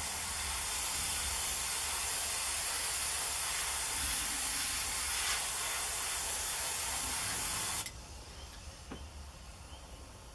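Airbrush spraying red paint through a dryer-sheet stencil, a steady hiss of air that cuts off suddenly about eight seconds in.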